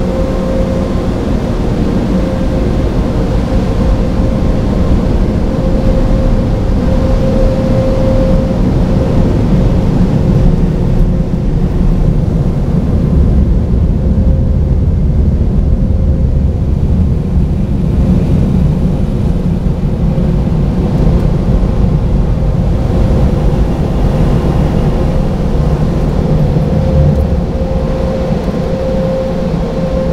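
Automatic car wash machinery, its water spray and drying blowers, heard from inside the car: a loud, steady rush and low rumble with a constant whine, heaviest in the middle, easing as the car rolls out of the wash bay near the end.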